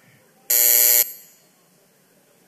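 An electric buzzer sounds once, a loud steady buzzing tone lasting about half a second that starts and stops abruptly.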